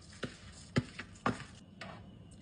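Four light knocks against a metal cooking pot, about one every half second, as rice is tipped off a plastic board into boiling water and a metal spoon goes in to stir it.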